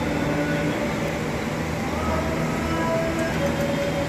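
Steady low rumble of outdoor ambient noise, with faint distant music of long held notes changing pitch every second or so.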